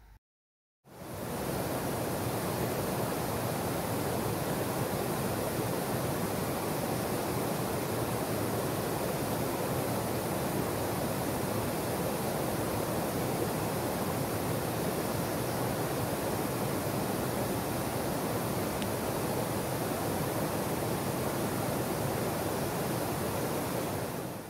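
Steady rush of water from small waterfalls cascading into a swollen creek, starting about a second in.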